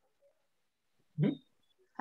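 A short, questioning "mm?" hum from a person's voice over a video-call line, about a second in, after a near-silent pause.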